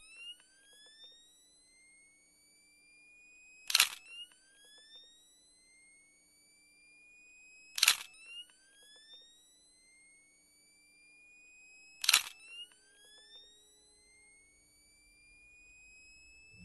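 Camera shutter clicking three times, about four seconds apart, each click followed by the high rising whine of a photo flash recharging, which climbs steadily until the next shot.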